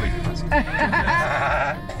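A man laughing, with a wavering, bleat-like laugh in the second half.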